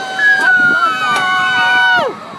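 Two riders screaming on an amusement ride: one long scream held at a steady pitch, joined shortly after by a second, higher scream that slides downward in pitch. Both cut off together at the end.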